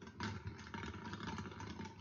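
Plastic draw balls rattling and clicking against one another and the glass bowl as they are stirred by hand, a dense clatter starting a moment in.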